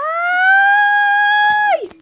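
A girl's voice holding one long, high-pitched note: it slides up at the start, stays level, then drops away near the end.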